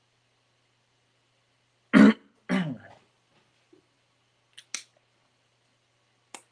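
A man clearing his throat twice in quick succession, about two seconds in. Two faint clicks follow near the end.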